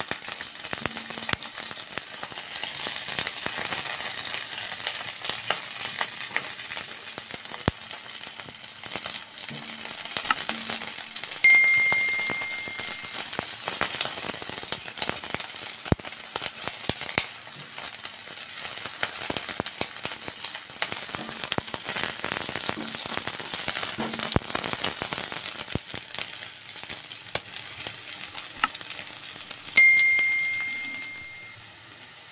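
Green chillies sizzling as they fry in hot oil in a nonstick pan, with the spatula tapping and scraping as they are turned. A short bell-like ding sounds twice, about eleven seconds in and at the very end.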